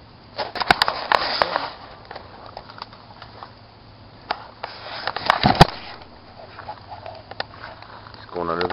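Footsteps crunching through dry leaf litter and twigs, in two short bursts of rustling with a few sharp snaps, the second about four seconds after the first.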